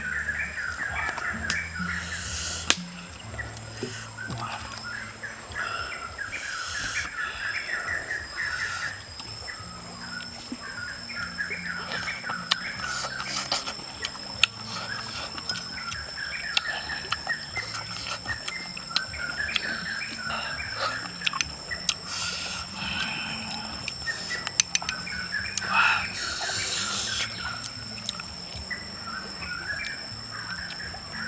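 Birds chirping in bouts of a few seconds each over a steady, high-pitched insect whine, with occasional sharp clicks.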